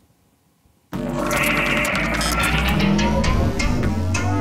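Near silence for about a second, then music starts suddenly: a steady deep bass with higher tones gliding upward over it.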